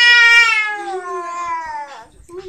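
A baby's long, high-pitched vocal squeal held without a break, sliding slowly down in pitch and fading out near the end.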